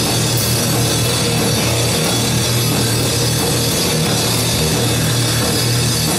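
Live heavy rock band playing loud and unbroken: a pounding drum kit with crashing cymbals under distorted bass and guitar.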